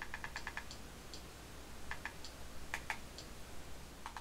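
Buttons on a handheld remote control clicking as they are pressed: a quick run of about six clicks at first, then single and paired clicks over the next few seconds.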